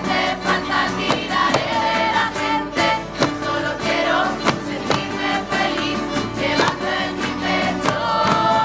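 Live mixed choir of young voices singing a song with acoustic guitars, over a beat of sharp percussive knocks.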